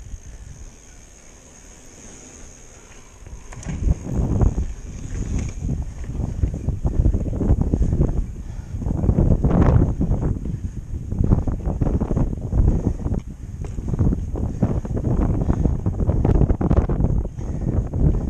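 Mountain bike riding over sandstone slickrock: wind rushing over the camera microphone with the rumble of tyres on rock and the bike's rattles and knocks. Quieter for the first few seconds, then much louder and rougher from about four seconds in as the pace picks up.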